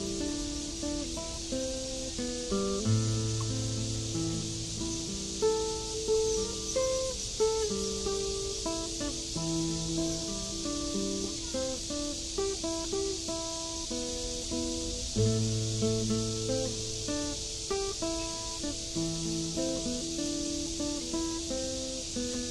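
Acoustic guitar played fingerstyle, a melody of plucked single notes over sustained bass notes. A steady high hiss runs underneath.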